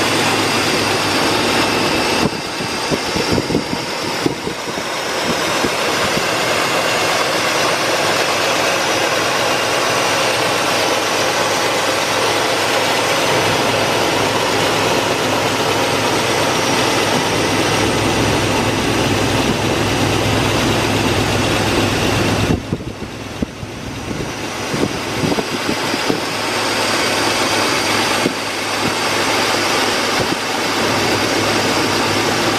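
A 2004 Dodge Dakota's 3.7-liter V6 idling steadily, heard close up under the open hood. The sound dips and wavers twice for a few seconds.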